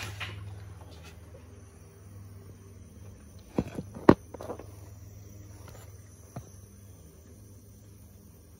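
Faint hiss of compressed air escaping at the crankcase vent of a 6.0 Powerstroke diesel during a high-pressure oil system air test, over a steady low hum: the sign of a small leak in the high-pressure oil system letting air into the crankcase. A few knocks come about three and a half to four seconds in, the loudest just after four seconds, and a small click near six and a half seconds.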